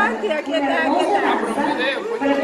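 Indistinct chatter of several guests talking at once, no single voice clear.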